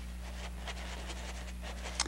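Paintbrush stroking oil paint onto canvas: soft, irregular scratchy strokes over a steady low hum.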